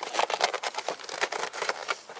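USPS Priority Mail paperboard flat rate envelope rustling and crackling in a quick run of small clicks as the liner is peeled off its adhesive strip and the flap is pressed shut.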